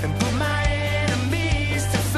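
Upbeat pop-rock worship song: a sung melody over bass and a steady drum beat.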